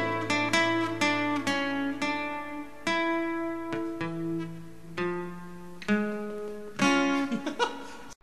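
Guitar plucking single notes and chords that ring out one after another, one or two a second and spacing out as they go, growing gradually quieter.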